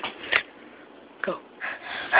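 A few short, breathy vocal sounds from a child, like stifled laughs or gasps, one falling in pitch about a second in.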